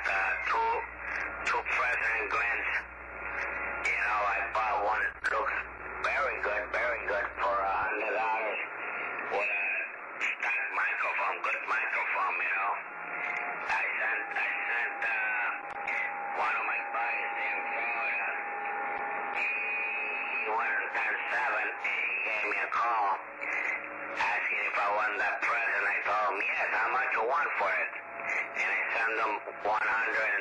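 A man's voice received over a CB radio on lower sideband, coming through the radio's speaker thin and narrow-band, with the top end cut off. A steady whistling tone sits under the speech for several seconds in the middle, and a low hum underneath stops about eight seconds in.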